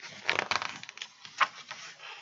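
A paper page of a picture book being turned by hand: a crinkling rustle in the first second, then a single sharp snap about one and a half seconds in.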